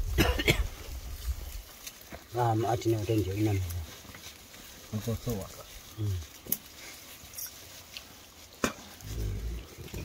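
Men's low voices in short bursts, with leafy branches rustling and a few sharp snaps of twigs as a thorny bush is pulled apart by hand.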